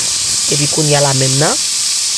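Herring frying in a saucepan, giving a steady sizzle.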